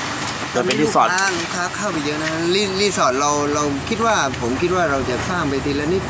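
Men talking in Thai in conversation, over a steady background hiss.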